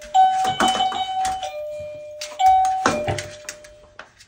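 Electronic ding-dong door chime rung twice, about two and a quarter seconds apart, each time a higher note falling to a lower held note, with sharp clicks and knocks in between. It is the dogs' signal to be let outside.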